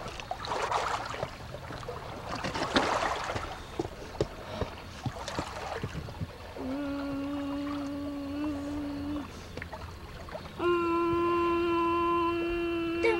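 Small waves lapping and splashing against shoreline boulders. Partway through, a long steady held note sounds for about two and a half seconds. Near the end, a louder, slightly higher held note begins and is still going at the end.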